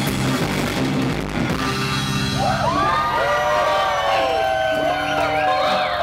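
Instrumental surf rock by a band with drum kit and electric guitar. About two seconds in, several high sliding tones start to rise and fall in pitch over the held band notes.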